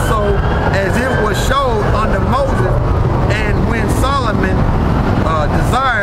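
A man's voice talking, over a steady low rumble of wind on the microphone and street traffic.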